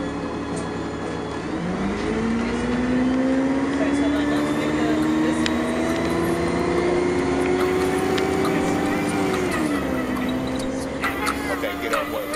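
Public transit vehicle running, its motor whine gliding up in pitch about two seconds in, climbing slowly as it gathers speed, then dropping near the ten-second mark, over a steady low rumble.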